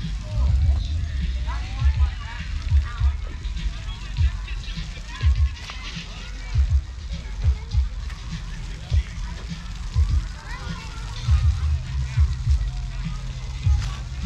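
Footsteps on grass thudding dully at an uneven walking pace, with wind rumbling on the microphone of a camera carried by hand. Faint distant voices sound underneath.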